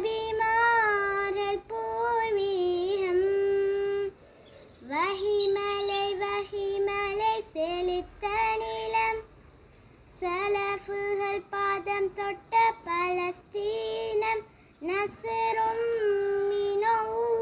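A young girl singing a qaseeda, an Islamic devotional song, solo and unaccompanied, in long held phrases with short breaks for breath about 4 s, 9 s and 15 s in.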